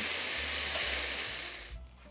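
Strips of sirloin searing in oil in a hot stainless-steel skillet: a steady sizzle that fades and then cuts off just before the end.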